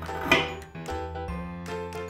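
Light, tinkling children's background music. About a third of a second in, a short, loud tearing rip as a knife pulls apart the hook-and-loop (Velcro) pads holding the two halves of a wooden toy apple together.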